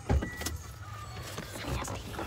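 A dull thump just after the start, then a click and faint scattered knocks and rustling as the phone is moved about inside the car.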